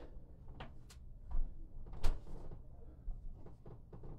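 A few knocks and thumps of a person and a dumbbell getting down onto an exercise mat on a wooden floor, the loudest about two seconds in.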